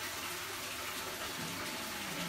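Steady splashing of several water streams falling from the top of a large aquarium onto the water surface.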